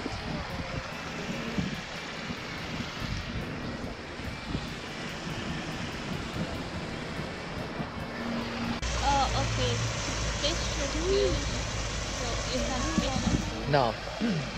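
Steady rush of water falling over a curved concrete dam spillway, with wind gusting on the microphone. About nine seconds in, the sound changes abruptly to a steadier, fuller rush with a low hum underneath, and faint voices come in near the end.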